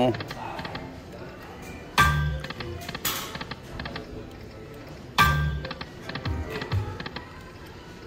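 Lightning Link poker machine spinning its reels twice, about three seconds apart. Each spin starts with a sudden loud sound, followed by short electronic tones and light ticks as the reels come to a stop.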